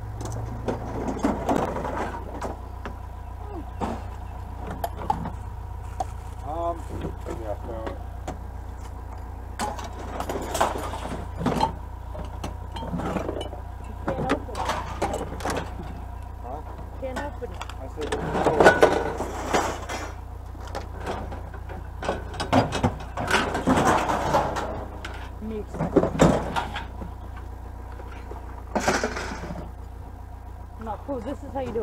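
Scrap metal being unloaded and thrown onto a scrapyard pile: repeated clanks, knocks and rattles, with the loudest clatter about two-thirds of the way through. Indistinct voices and a steady low rumble from a vehicle run underneath.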